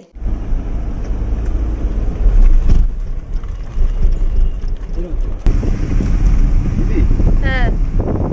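Wind buffeting the microphone: a loud, steady low rumble, dipping briefly about three seconds in and again about halfway through.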